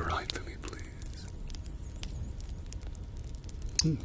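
A man's soft, low voice trailing off at the very start and returning briefly near the end, with scattered faint clicks in between.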